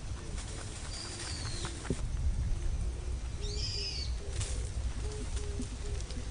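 Birds calling outdoors: a low call repeated over and over in short notes, with a few higher chirping calls, over a steady low rumble.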